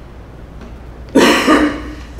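A person coughs once, a short double cough a little over a second in.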